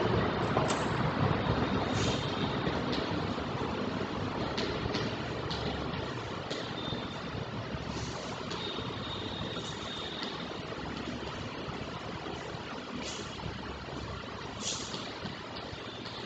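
Chalk writing on a blackboard: scattered light taps and strokes with a few brief high squeaks, over a steady hiss that slowly fades.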